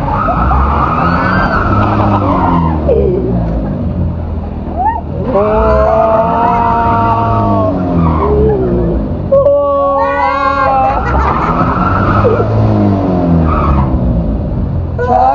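Amusement ride machinery running under load: a heavy rumble with a whine that rises and falls in three long swells as the ride swings. Riders shriek and laugh over it, loudest about two-thirds of the way through.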